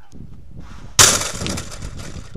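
A single sudden crash about a second in, with a bright, rattling ring that fades over about half a second.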